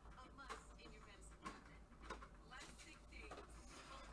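Near silence, with a few faint soft clicks and rustles of trading cards being slid through gloved hands.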